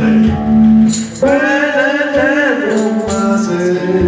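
Live blues played on a hollow-body electric guitar through a small amplifier, with tambourine strikes and light drum accompaniment. A male voice sings a wavering line for about a second and a half in the middle.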